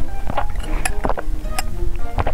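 Background music made of short, separate notes, with a few sharp clicks among them.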